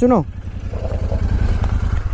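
Royal Enfield 650 parallel-twin motorcycle engine running at low revs with a steady, even throb as the bike rolls slowly down a dirt trail.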